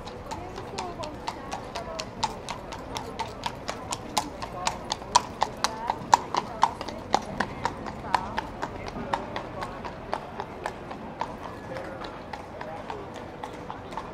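Horse's shod hooves clip-clopping on cobblestones as a horse-drawn carriage passes close by, about three strikes a second. They are loudest around the middle and fade away near the end.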